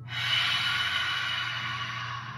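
A woman's long, breathy 'ha' exhale through an open mouth, starting suddenly and fading away over about two seconds: the audible sighing out-breath of a yogic 'ha' breath.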